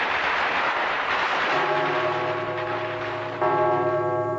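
Fireworks crackling and hissing. About a second and a half in, sustained bell-like chime tones come in, stepping louder near the end.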